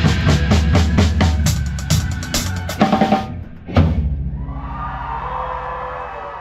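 Drum kit playing the end of a song: a run of bass drum and snare strokes building into a fast fill, a brief drop, then one final loud crash just before four seconds in. The crash is left to ring out under a held chord that slowly fades.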